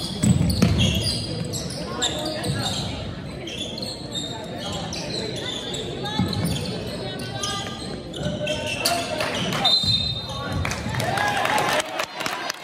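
Basketball bouncing on a hardwood gym floor during play, with sneakers squeaking and people talking, echoing in the large gym.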